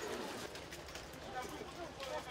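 A bird calling over indistinct voices in the background.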